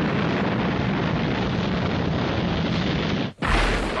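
Blast sound effect after a countdown: a loud, dense rush of noise for about three seconds that cuts off abruptly, followed by a short, deeper boom near the end.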